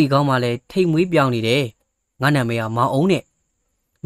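Only speech: a narrator reading a Burmese audiobook aloud, in short phrases with brief pauses between them.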